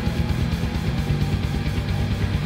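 Instrumental passage of a loud rock song: electric guitar and bass over a steady, fast drum-kit beat.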